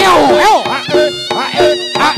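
Live Reog Ponorogo gamelan music accompanying a Jathil dance: a slompret (Javanese shawm) plays a buzzy melody that bends up and down in pitch, over a steady beat of drum strokes and ringing gong-chime notes.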